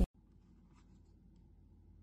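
Faint steady low hum with a few soft, quiet ticks just under a second in.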